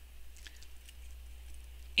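Faint handling noises: a few soft taps and rustles as a cardboard viewing box is moved about in the hands, over a steady low hum.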